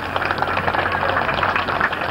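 Spectators applauding, a steady patter of many hands clapping.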